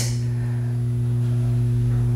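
Steady low hum: one deep tone with fainter overtones above it, holding unchanged.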